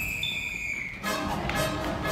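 A single high whistle tone held steady, stopping just under a second in. After a short lull, music with sharp hits starts again about a second in.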